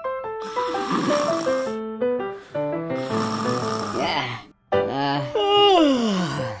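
Cartoon snoring sound effect: two long snores over a light musical tune, then a falling whistle-like tone near the end.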